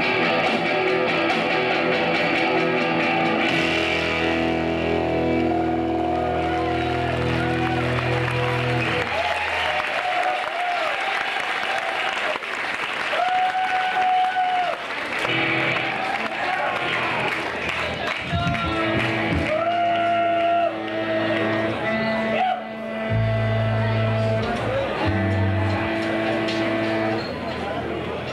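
Electric guitar and bass guitar through amplifiers in a live rock club, holding long sustained notes with bent notes sliding up and down rather than playing a song with a steady beat, over crowd noise.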